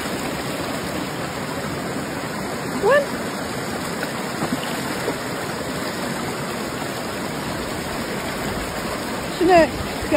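Shallow mountain stream running over boulders, a steady rush of flowing water heard close up.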